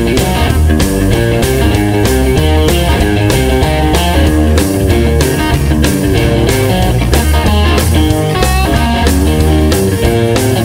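Rock music with no vocals: a guitar part over a steady drum beat and a heavy bass line.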